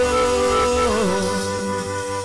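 Worship song: a man's voice holds a sung note over sustained instrumental chords and bass, and the note ends about a second in while the chords ring on.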